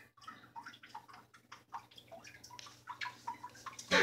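Aquarium water dripping and bubbling: irregular small drips and pops, several a second, over a faint low steady hum.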